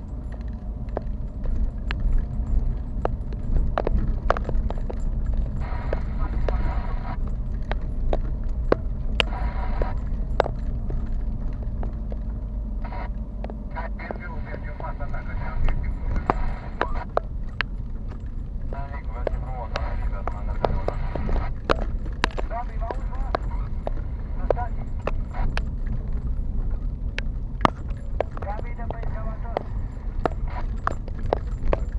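Car driving over a rough unpaved road, heard from inside the cabin: a steady low rumble with frequent sharp clicks and knocks from the bumpy surface.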